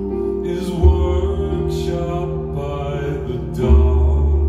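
Live acoustic string ensemble of several cellos and a double bass playing sustained low chords. A deep bass note swells in about a second in and again near the end.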